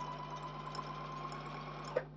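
Husqvarna Viking electric sewing machine running steadily as it stitches a seam through fabric, stopping right at the end.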